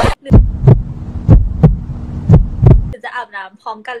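Heartbeat sound effect: three double thumps about a second apart over a low hum, cutting off suddenly about three seconds in.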